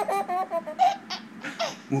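A baby laughing in a run of short, high-pitched bursts, with a couple more laughs near the end.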